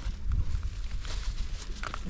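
Footsteps on icy, crusted snow, a few faint crunches, over a steady low rumble on the microphone.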